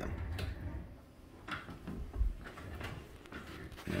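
Low steady room hum with a few soft knocks and bumps, the loudest a low thump a little past the middle.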